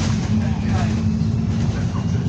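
A bus's diesel engine droning steadily under load as the bus turns and drives away, heard from inside at the front of the saloon.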